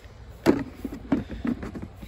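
Plastic battery-box lid being handled and set down onto the box. There is one sharp knock about half a second in, then several lighter knocks and clatters.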